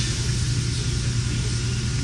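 Steady low hum with an even background hiss, unchanging throughout.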